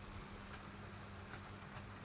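Faint running sound of an OO gauge model train of Bachmann Warflat wagons rolling through points: a steady low hum with a few light, irregular clicks from the wheels on the track.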